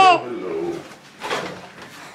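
The tail of a drawn-out, sing-song voice that glides in pitch and ends just after the start. A soft, low coo follows, then brief quiet handling noise.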